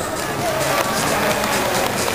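Audience applauding: a dense, even patter of clapping.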